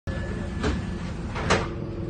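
Inside an Optare Solo bus: the engine's steady low running hum, broken by two short knocks, a lighter one about half a second in and a louder one about a second and a half in.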